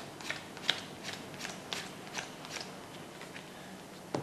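Playing cards being dealt one at a time face up from a deck onto a cloth-covered table: faint, short flicks, about two or three a second.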